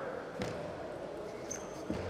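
Table tennis ball being struck in a doubles rally: two sharp clicks about a second and a half apart, over the steady hum of the hall.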